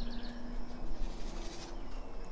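Birds chirping faintly, a quick run of high notes at the start, over a low steady hum that fades about a second in, with soft rustling of paper being handled.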